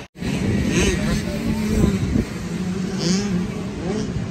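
Wind buffeting the microphone over the running engines of motocross bikes on the track, with a wavering engine note.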